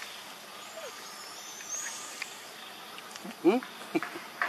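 Steady outdoor insect drone. Near the end comes a quick run of short, rising squeaks, the loudest sound here, while a baby macaque sucks milk from a feeding bottle.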